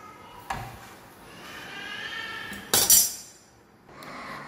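Kitchen utensils and dishes clinking: a light clink about half a second in, then a louder, brief clatter just under three seconds in. A faint wavering tone sounds between them.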